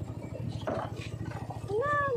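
A small motorcycle engine running slowly, with a steady low pulsing. Near the end comes a short, wavering, high call.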